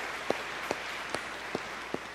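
Congregation applauding in a large hall. Over it, close, crisp hand claps from one person come about two and a half times a second.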